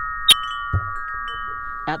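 Metal tube wind chimes ringing, several tones sounding together and held steadily. A sharp clink comes about a third of a second in.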